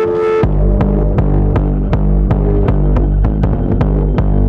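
Live distorted techno: a held synth tone and hi-hats drop out about half a second in. A heavy distorted kick and bass from a Roland TR-909 drum machine take over, beating at about 160 beats a minute.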